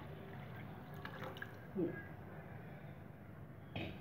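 Faint trickling and dripping of water poured into a frying pan of sautéed chopped vegetables, with a short low sound about two seconds in.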